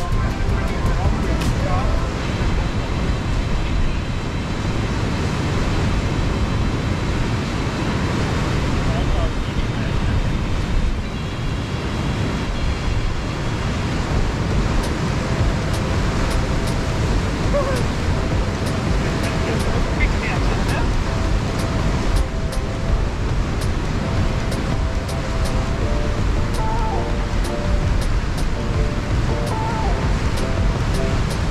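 Rough sea surf breaking and washing over rocks, with wind rumbling on the microphone.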